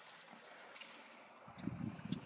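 Quiet outdoor background, then about one and a half seconds in, soft rustling and irregular low thumps of movement through tall grass.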